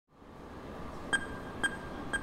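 A steady hiss fading in, then two short, sharp ticks half a second apart: the start of an even ticking.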